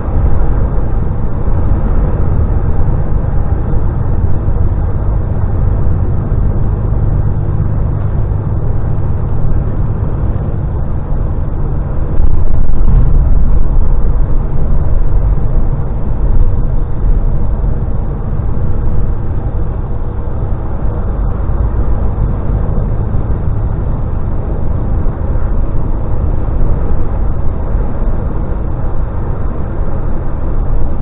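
DAF XF lorry's diesel engine and tyre noise heard inside the cab at motorway speed: a steady low drone, louder for a few seconds about twelve seconds in.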